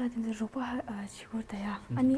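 Speech only: a girl talking.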